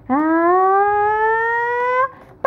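A single long vocal sound, a held "aaah" that rises steadily in pitch throughout, from a child or a woman.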